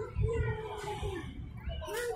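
A small child's drawn-out, whiny high-pitched vocalisation lasting about a second, followed by shorter voice sounds near the end, over low thumps.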